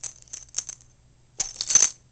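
Metal ID tags on a boxer's collar jingling as he jerks his head up, snapping at imaginary flies: a few light clinks in the first second, then a louder, denser jangle in the second half.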